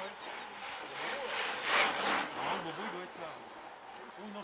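Low chatter of roadside spectators, with a brief rushing noise that swells and fades about a second and a half to two and a half seconds in.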